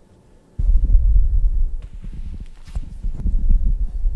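Microphone handling noise: a string of low thumps and rustles, starting about half a second in.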